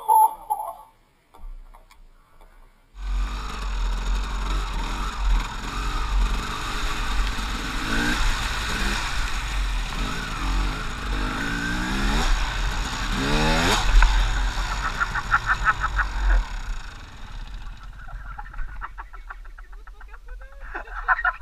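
Dirt bike engine running and revving hard on an off-road trail, heard from a helmet camera with heavy wind rumble on the microphone; the revs rise and fall several times in the middle, and the engine noise drops away about three-quarters of the way through.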